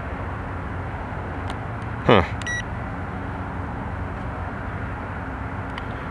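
A single short, high electronic beep from the iDrone i3s quadcopter's handheld transmitter, about halfway through, while its sticks and bumper are held for gyro recalibration. Under it runs a steady low background noise.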